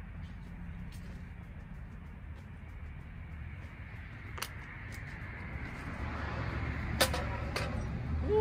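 Steady low outdoor rumble that grows louder in the last two seconds, with a few sharp clicks, the loudest about seven seconds in.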